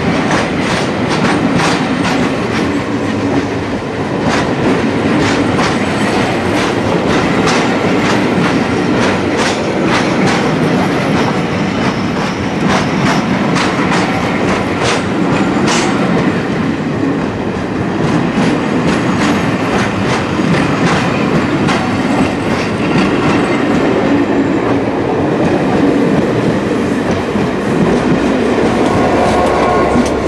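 Pullman passenger coaches rolling past at close range: a steady rumble of wheels on rail, with a continual clickety-clack of wheels over rail joints.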